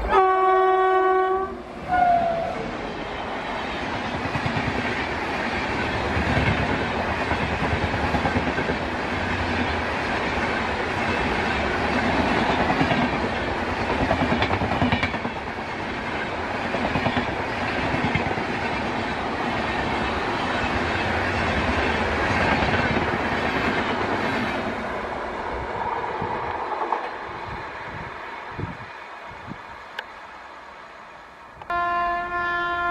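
An Indian Railways WAP-7 electric locomotive sounds a long blast on its air horn and then a short second note as the Duronto Express comes on. The train then passes at speed: a loud steady rush of coaches with rapid clickety-clack from the wheels over the rail joints, fading away over the last few seconds.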